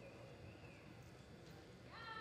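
Near silence: faint indoor arena room tone, with a thin high tone wavering briefly in the first second.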